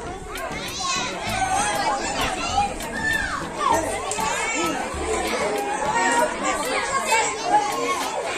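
A crowd of children talking and calling out over one another, many high voices overlapping at once.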